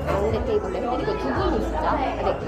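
Voices talking amid the chatter of diners in a busy restaurant dining room.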